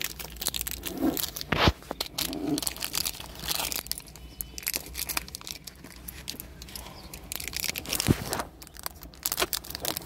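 Crinkling and rustling of objects being handled and rummaged through, with two sharper knocks, one about two seconds in and one about eight seconds in.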